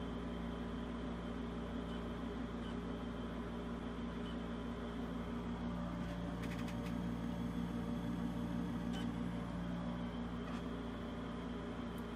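LG 8x ultra-slim external DVD burner spinning a disc while its software runs a task: a steady whirring hum, a little louder in the middle, with a few faint ticks.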